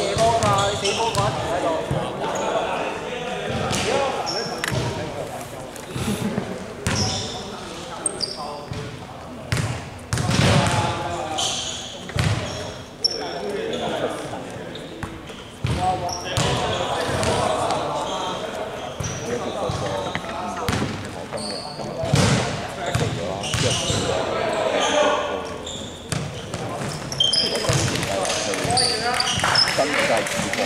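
A basketball bouncing and thudding on a hardwood gym floor again and again, mixed with players' voices and calls echoing in a large hall, and short high squeaks.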